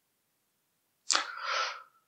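A single short, sharp breath noise from the narrator, starting suddenly about a second in and lasting under a second.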